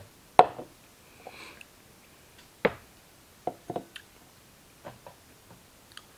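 A handful of short, sharp clicks and knocks at irregular intervals, the loudest about half a second in, with quiet room tone between them.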